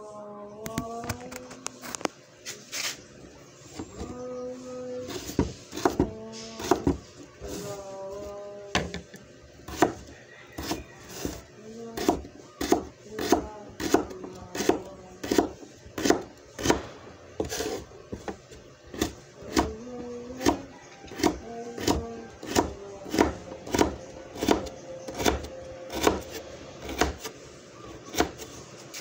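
Knife chopping vegetables on a cutting board: sharp repeated strikes, settling into a steady run of about two a second in the second half. A melody of held notes, humming or music, sounds over the first several seconds and again briefly past the middle.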